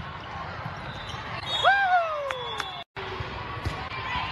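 Volleyball gym sounds: a long falling shout from a player or spectator, an abrupt cut about three seconds in, then a sharp ball-contact thud.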